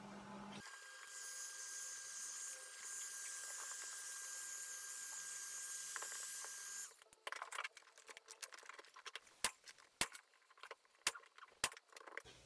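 Electric heat gun running with a steady, high hiss and a faint steady tone, warming a vinyl convertible rear window. It shuts off about 7 seconds in, followed by scattered sharp clicks and crackles.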